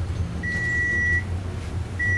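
Elevator's electronic signal beeping: a steady high tone of about three-quarters of a second, repeating about every second and a half, over the low hum of the moving cab.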